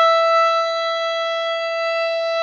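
Background music: one long violin note held steady at a single pitch.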